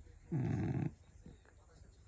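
A single short, rough vocal sound, about half a second long, starting a third of a second in.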